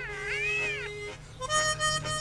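Harmonica playing: wavering notes bent up and down over a held lower note for about the first second, then steady chords from about a second and a half in.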